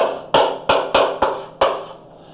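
Chalk striking and scraping on a blackboard as a formula is written: about six sharp taps, roughly three a second, each with a short ringing decay.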